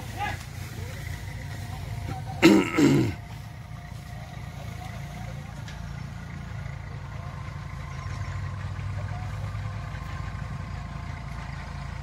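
Compact Kubota B2441 tractor's three-cylinder diesel engine running steadily as it works the field, a little louder near the end. About two and a half seconds in, a man's voice calls out briefly and loudly.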